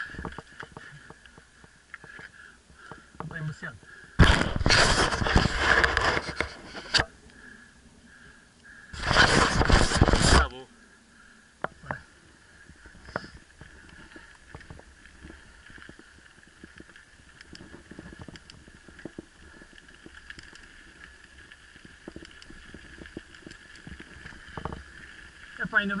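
Mountain bike riding over a dirt and gravel track, with small rattles and knocks from the bike throughout. Two loud rushes of wind noise hit the microphone, about four and nine seconds in, each lasting a couple of seconds.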